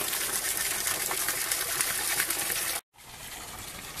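Steady rush and splash of running water from a small waterfall where a culverted side stream pours into a shallow river. The sound cuts off suddenly about three seconds in and comes back quieter.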